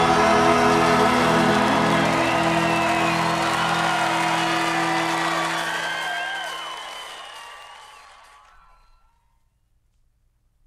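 A live rock band holds its final chord; the low end drops out about four seconds in as the chord rings off. Audience whoops and whistles rise over it, then the recording fades to silence near the end.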